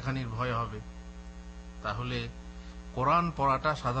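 Steady electrical mains hum on the recording, under a man's voice speaking in short phrases into a microphone.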